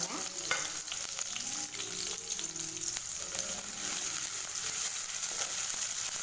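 Sliced shallots sizzling and frying steadily in hot oil in a pan, with a spatula stirring them near the end.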